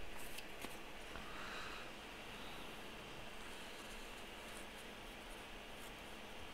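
Faint handling of paper: a few light ticks and a soft rustle as torn paper scraps are moved and laid onto a notebook page, over quiet room tone.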